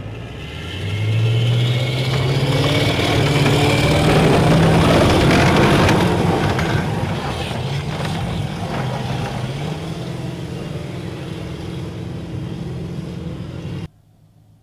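Diesel engine of a tracked AAV-7 amphibious assault vehicle revving up about a second in as it pulls away. It is loud for several seconds, fades gradually as it moves off, and stops suddenly near the end.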